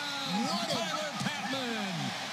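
A man's voice speaking, quieter than the surrounding talk: the television broadcast commentary calling a football play.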